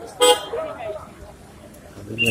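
A vehicle horn giving one short beep about a quarter of a second in, with faint voices around it.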